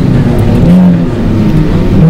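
Several rear-wheel-drive dirt rod race cars' engines revving hard as they slide past close by, the engine notes shifting in pitch.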